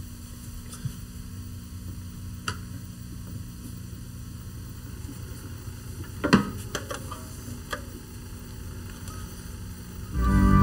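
Steady low electrical hum with faint hiss, broken by a few small clicks and knocks, the loudest cluster about six seconds in.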